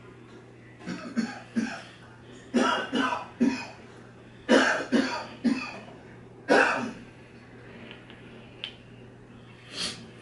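A person coughing in several short fits of two to four coughs each, with pauses of about a second between the fits.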